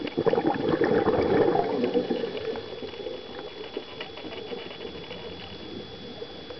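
Scuba diver's exhaled bubbles gurgling out of the regulator, loudest for the first two seconds or so, then fading to a fainter underwater crackle with scattered clicks. A thin steady high tone runs underneath.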